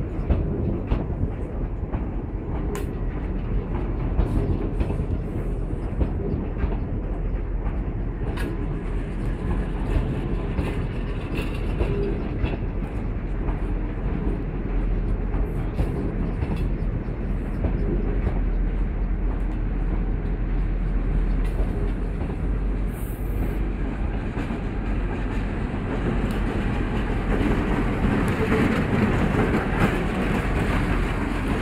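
New CSR Mitsubishi electric multiple-unit cars rolling slowly past, moved by a diesel locomotive: a steady rumble of wheels on rails with frequent short clicks. The sound swells near the end as the locomotive comes alongside.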